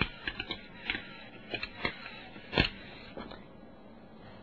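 A string of irregular sharp clicks and crackles, the loudest about two and a half seconds in, over a faint hiss.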